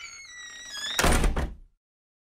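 Short transition sound effect: a tone that rises over about a second, ending in a loud thud that dies away about a second and a half in.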